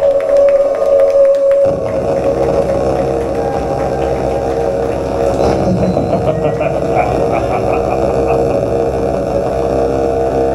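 A live band playing loud, droning music. A sustained chord holds alone at first, then about two seconds in the low end comes in under it and a thick, steady drone carries on.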